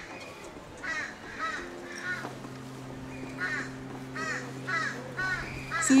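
A crow cawing repeatedly in a series of short calls. A low steady hum comes in about two seconds in.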